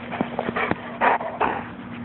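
A dog close to the microphone making a few short, breathy huffs in quick succession, mostly in the second half.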